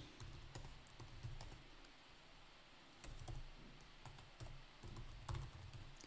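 Faint computer keyboard typing: irregular keystrokes as commands are typed at a command prompt, with a short pause about two seconds in.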